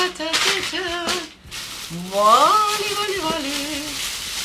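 Paper packing and a plastic bag crinkling and rustling as a doll kit is unpacked from a cardboard box. A woman's voice sings wordless notes over it: a few short ones, then one that rises and is held.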